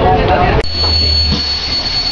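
Cabin sound of an articulated city bus drawing up at a station: a steady low engine rumble with passengers' voices. About half a second in, the voices drop away and a thin, steady high whine comes in over the rumble.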